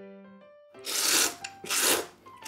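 A person slurping thick tsukemen noodles up from the dipping broth: two loud slurps, about a second in and again near the end.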